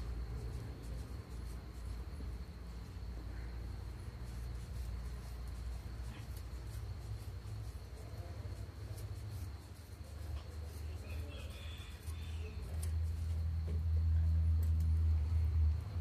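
Scissors cutting through thick cotton macramé cord, faint scattered snips, over a low steady rumble that grows louder near the end.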